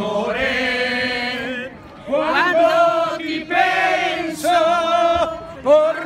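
A group of men and women singing a song together, unaccompanied, in long held notes. The phrases break off briefly about two seconds in and again shortly before the end.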